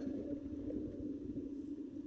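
Wind rumbling on the phone microphone at the shore: a faint, steady, low noise with no distinct events.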